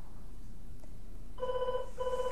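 Landline telephone ringing, starting about one and a half seconds in, as two short bursts of a trilling electronic ring.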